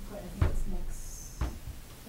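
Two dull knocks about a second apart, over faint low voices.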